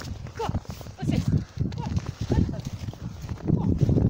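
Footsteps crunching through thin snow at a walking pace, about two steps a second, with a few brief high vocal sounds over them.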